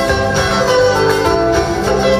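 Live band playing through a PA, with electric and acoustic guitars and bass guitar: a plucked guitar melody over a steady bass line.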